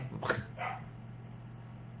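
A man's short, breathy burst of laughter just after he stops talking, then a steady low hum under the quiet that follows.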